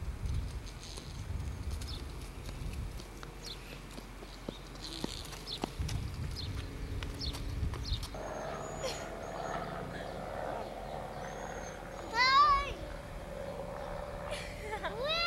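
A young child's brief high-pitched squeal about twelve seconds in, the loudest sound, over low outdoor background noise.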